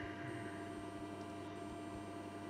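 Steady, faint electrical hum with a few held tones over a low hiss, with no other event.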